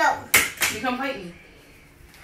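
Two sharp hand smacks close together near the start, with brief children's voices around them.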